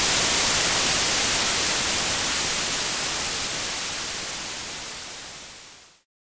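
Steady hiss of TV-style static, a white-noise effect laid under a glitching logo, fading out gradually over the last few seconds and stopping just before the end.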